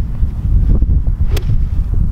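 Wind buffeting the microphone, with a single sharp click a little past halfway as a golf iron swings through the hitting area.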